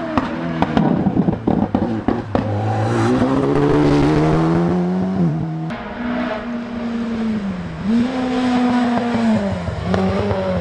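Rally car engines at full throttle on a tarmac stage. In the first couple of seconds there is a rapid string of sharp exhaust pops and crackles, then the engine pulls with a rising pitch. The sound cuts abruptly a little after halfway to a car accelerating hard, its note rising and dropping twice as it shifts up through the gears.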